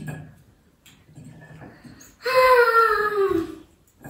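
A young child's whining cry: one long wail, starting about two seconds in and falling in pitch.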